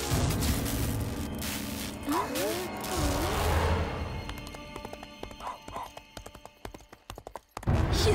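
Cartoon sound effects over eerie background music: a horse whinnying, then hoofbeats clip-clopping at a steady pace and fading away.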